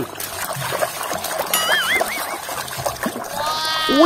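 A hand sloshing and scrubbing a toy figure in a plastic tub of water, with irregular splashing throughout. About one and a half seconds in comes a brief wavering, warbling tone, and near the end a sweeping tone that bends up and back down.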